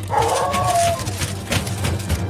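A hound giving one long howling bay of about a second, falling slightly at the end, followed by a short clatter about a second and a half in.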